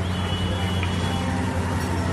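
Steady outdoor background noise: an even, continuous hiss and rumble with a low hum underneath, at a constant level.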